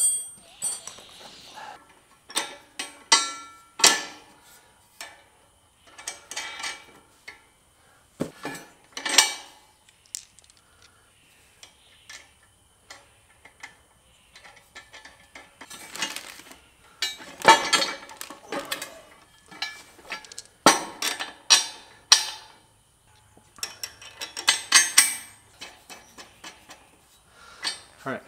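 Steel parts of a Black Boar disc harrow clanking and clinking as the notched discs, spacers and bolts are handled and fitted onto the gang shaft. The knocks come irregularly, some ringing briefly, with quieter handling noise between.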